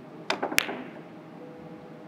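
Three-cushion carom billiards shot: a sharp click of the cue tip on the cue ball, then a quick run of ball clicks, the loudest with a short ring as the cue ball strikes the red ball.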